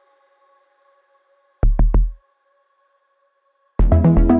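Electronic music played back from a software synthesizer in a music-production session. After a near-silent start, three short low synth hits come in quick succession about one and a half seconds in, then a looping electronic track with a steady beat kicks in just before the end.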